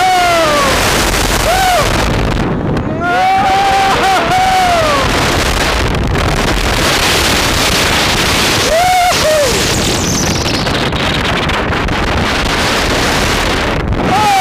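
B&M dive coaster train running at speed, with heavy wind rushing over the microphone. Riders scream several times, the longest about three seconds in.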